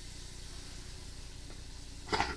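Steady low hiss with a low hum underneath, an indoor background noise with nothing happening; a faint single click comes about one and a half seconds in.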